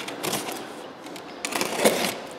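Utility knife slitting the packing tape on a cardboard box: short scratchy cuts and cardboard rustle in uneven spurts, the loudest near the end.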